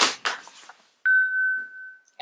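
A single electronic ding: one clear high tone that starts suddenly about a second in and slowly fades.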